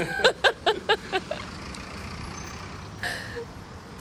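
Steady traffic noise from a slow, congested city road, with a short hiss about three seconds in. A voice sounds in a few quick, loud bursts during the first second.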